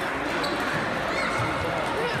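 Background chatter of people in a large hall, with table tennis balls clicking on tables.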